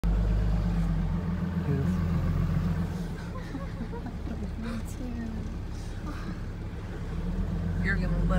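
Pickup truck's engine and road noise heard from inside the cab, a steady low rumble that eases off about three seconds in and picks up again near the end.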